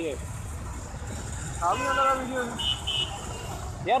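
Honda Twister single-cylinder motorcycle riding in slow traffic: a steady low rumble of engine and wind on the helmet-mounted phone's microphone. A voice is heard briefly about halfway through, and there are two short high-pitched beeps about three seconds in.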